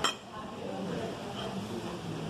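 A single sharp clink of metal cutlery right at the start, ringing briefly, followed by low steady background noise.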